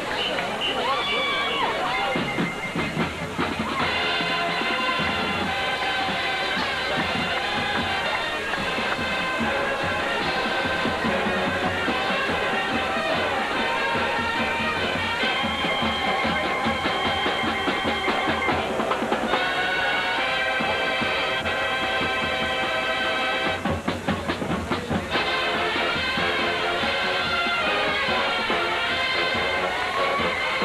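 High school marching band playing its field show: sustained wind and brass chords over marching drums. Brief drum-only breaks come about two seconds in and again about twenty-four seconds in.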